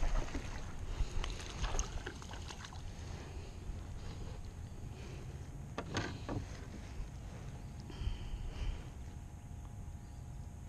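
Wind rumbling on the microphone and water around a small plastic fishing boat, with a few sharp knocks and clicks of gear against the hull, the first and loudest right at the start.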